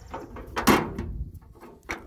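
Sheet-metal hood panel of an old tractor being lowered shut: one loud metal clunk about two-thirds of a second in, and a smaller knock near the end.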